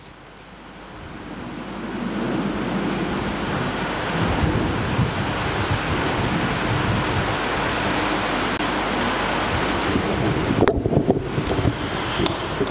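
Loud steady rushing noise of air buffeting the microphone, with a rumbling low end; it swells in over the first two seconds and cuts off sharply near the end.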